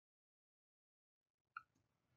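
Near silence: dead silence at first, then faint room tone with one soft tick near the end.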